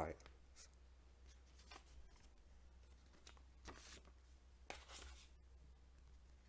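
Faint rustling of a paper envelope and the cards inside it being handled, a few soft scuffs scattered through an otherwise near-silent stretch, the clearest about four and five seconds in.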